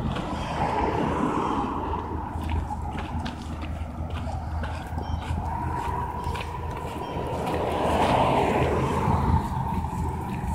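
Road traffic on the road alongside, heard as a steady low rumble of passing cars that swells as a car goes by about eight seconds in.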